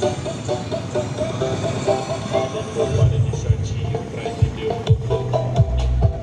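Music played loud through a large carnival sound system: a quick repeating melody, with heavy deep bass notes coming in about halfway.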